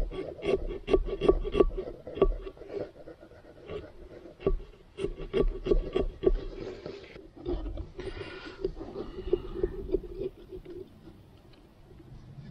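A thin pumpkin-carving saw sawing through pumpkin rind and flesh: quick back-and-forth rasping strokes, several to the second, in spells with short pauses.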